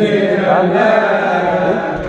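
A male voice chanting a Shia Husseini mourning latmiya, drawing out a sung line with a wavering melody.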